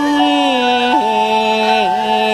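Yue opera music: long held notes that step down in pitch about a second in.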